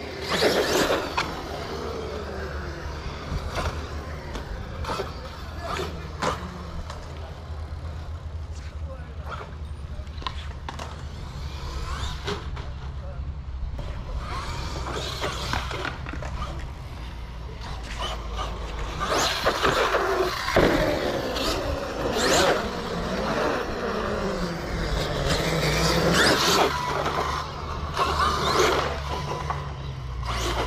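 Arrma 8S brushless RC truck driving on skatepark concrete: its motor whine rises and falls with the throttle, over tyre noise and scattered knocks. Voices can be heard in the background.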